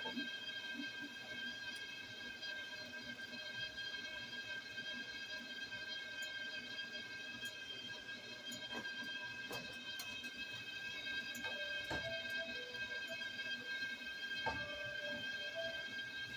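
Donut frying in a shallow pan of oil: sparse faint pops and crackles, over a steady high-pitched whine of several tones held throughout.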